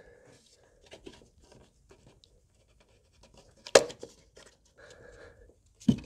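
Mercedes W220 S320 mass air flow sensor assembly being worked free and lifted out of the intake: faint scraping and handling noises, a sharp click about two-thirds of the way in, and a knock just before the end.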